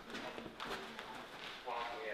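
Muffled, unintelligible voices of soldiers speaking through gas masks, with a clearer stretch of voiced sound near the end.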